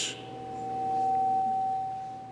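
A single steady pure tone, swelling up and fading away over about two seconds, typical of feedback ringing through a church public-address system.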